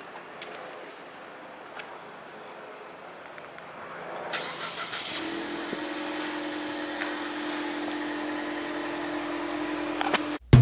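Ford Mustang 2.3-litre EcoBoost four-cylinder engine starting about four seconds in, then idling steadily.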